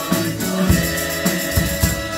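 Church congregation singing a Spanish worship song together, accompanied by accordion, with a steady beat about twice a second.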